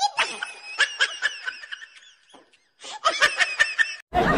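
Laughter in quick snickering bursts, in two runs with a short pause about two seconds in.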